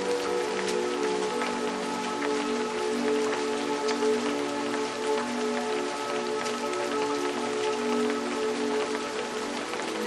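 Steady rain with many small drop patters, over soft ambient music of long held chords that shift every few seconds.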